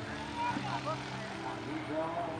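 Scattered voices over a steady engine hum.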